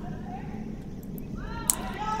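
Ice-level sound of a curling stone in play: the granite stone sliding down the sheet with a steady low rumble while a player sweeps beside it. About a second and a half in, a long call rises and then holds, and a single sharp click comes just after.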